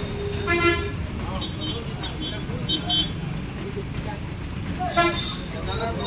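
Vehicle horns honking in street traffic: a short horn blast about half a second in, a brief higher toot around the middle and another blast near the end, over a steady traffic rumble.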